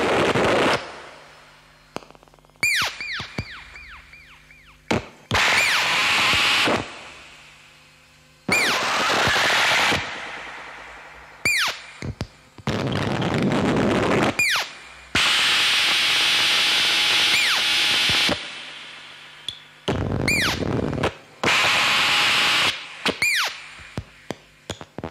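Ciat-Lonbarde and modular synthesizer patch putting out harsh electronic noise in abrupt blocks of one to three seconds, about eight of them, separated by short gaps. Quick falling chirps mark the start of several blocks.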